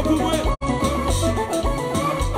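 Haitian konpa band playing live: a keyboard melody over electric bass guitar and a steady beat. The sound drops out for a split second about half a second in.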